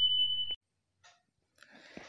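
A single high, steady electronic beep, the sound effect of a subscribe animation's notification bell being clicked, cutting off about half a second in.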